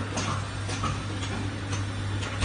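HX-009 automatic tube filling and sealing machine running: a steady hum under a stream of irregular mechanical clicks and ticks, a few each second, from its indexing turntable and stations.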